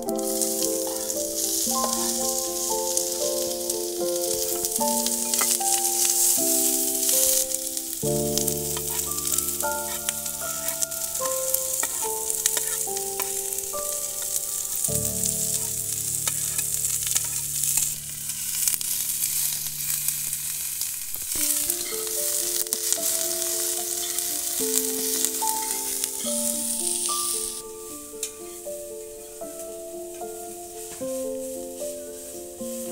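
Sliced onions, green chillies and curry leaves sizzling as they fry in hot oil in a pan, over background music with a simple melody. The sizzle drops away near the end.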